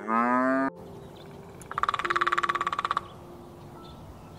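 A cow moos, loud, and the call breaks off abruptly less than a second in. About two seconds in comes a fast rattle of about twenty pulses a second, lasting about a second, from an unidentified animal.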